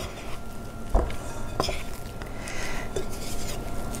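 Metal spoon stirring stiff, shaggy bread dough in a mixing bowl, scraping and knocking against the bowl's side three times, with a faint ring from the bowl.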